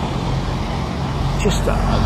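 Motorcycle engine running at a steady low hum as it rides along a street, with road and wind noise over it.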